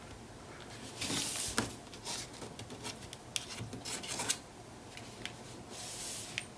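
Fingers rubbing and smoothing a strip of patterned paper down onto black cardstock in short strokes, with a few light ticks; the longest stroke comes about a second in.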